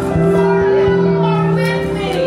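Live worship music: a singer over a band's sustained chords, with held notes and a wavering vocal line.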